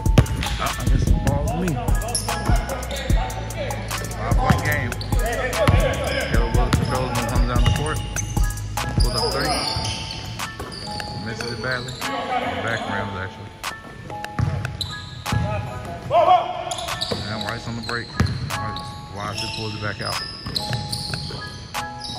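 A basketball bouncing again and again on a hardwood gym floor during play, irregular sharp thuds echoing in the hall, with players' voices calling out here and there.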